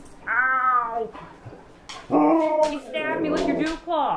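Siberian husky 'talking': three drawn-out, rising-and-falling whining howls, one near the start and two close together in the second half.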